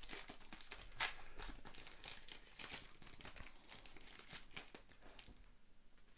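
Foil wrapper of an O-Pee-Chee Platinum hockey card pack crinkling and tearing as it is pulled open. The crackle is sharpest about a second in and dies down toward the end.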